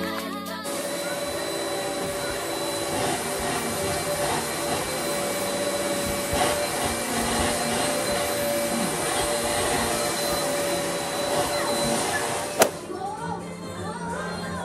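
Upright vacuum cleaner running steadily, its motor giving a constant whine over a hiss of suction. The sound stops about a second before the end with a single sharp knock.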